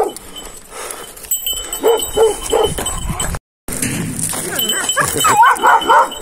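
Dogs barking and yelping: a few short barks about two seconds in, then higher, wavering yelps near the end, with a brief dropout in between.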